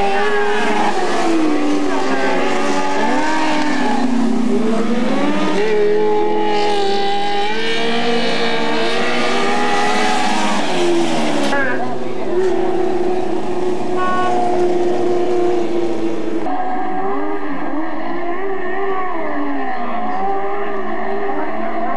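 Several dirt-track Sportsman race car engines running at speed as the cars go past, many engine pitches rising and falling over one another. The sound changes abruptly about three-quarters of the way through.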